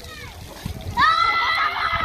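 Children playing at a splash pad, with one child letting out a long high-pitched yell about a second in, over the splatter of water jets on the wet pavement.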